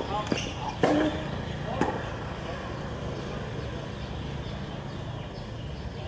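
A tennis ball bouncing on a hard court, a few sharp knocks in the first two seconds, with a brief voice among them, then a steady background hum.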